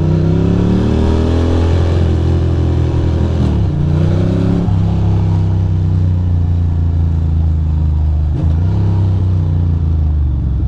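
Ducati Monster 620's air-cooled L-twin engine pulling the bike along a street. Its note rises over the first couple of seconds and falls back at gear changes about four and five seconds in. It then holds steady, with a brief dip near the end.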